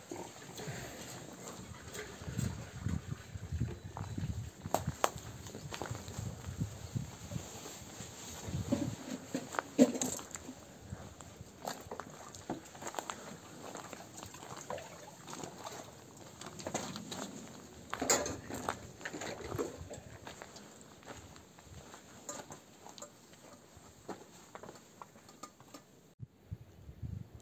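Washing up by hand at an outdoor basin: water splashing and sloshing, with irregular clinks and knocks of dishes and utensils.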